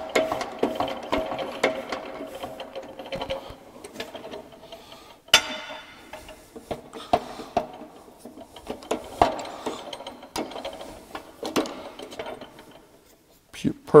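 Hydraulic shop press working as a steel slug is pressed into a steel tube for an interference fit: rapid mechanical clicking and ratcheting with a steady tone in the first few seconds, a sharp loud click about five seconds in, then scattered clicks as the pressing goes on and the ram is released.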